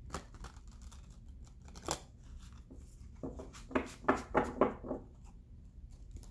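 A deck of oracle cards being shuffled by hand: a couple of sharp clicks, then a quick run of card strokes about four a second in the second half.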